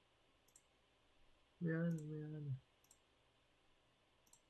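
A few computer mouse clicks: a single sharp click about half a second in and two quick ones near three seconds in. Between them a man makes a short vocal sound that falls in pitch.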